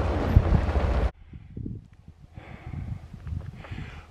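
Wind buffeting the microphone with a loud, steady low rumble, cut off abruptly about a second in. Quieter wind noise follows, with faint, irregular low thuds.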